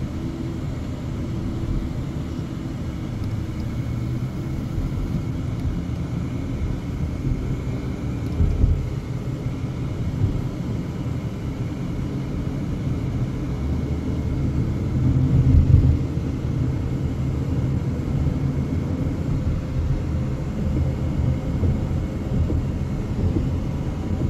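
Steady road and engine rumble of a moving car, heard from inside the cabin. It has two louder low swells, a short one about eight seconds in and a longer one about fifteen seconds in.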